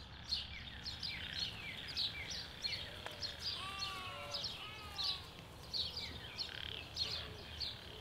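Several small birds chirping repeatedly, short high downward chirps a few times a second, with a brief series of lower calls a little past the middle.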